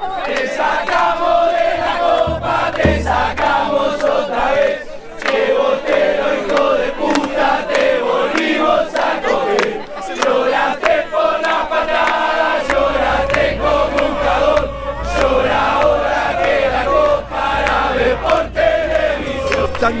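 A crowd of football supporters singing a chant together, loud and without a break.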